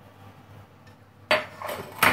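A small glass spice jar knocked down onto a granite countertop, one sharp clack about a second and a half in, followed by a few lighter clinks as spice containers are handled.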